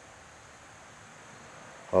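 A pause in speech with only faint, steady room hiss; a man's voice comes back right at the end.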